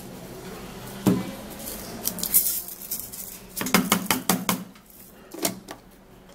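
Knocks and clatter of a plastic blender cup, its blade assembly and a jar of fenugreek seed being handled as the cup is closed and set onto its motor base, with a dense cluster of sharp clicks about four seconds in.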